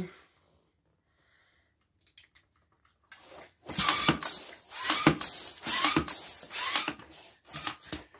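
Long white twisting balloon being inflated with a hand pump. After a quiet start comes a run of rushing-air strokes about every half second to a second, with thin squeaks from the stretching latex.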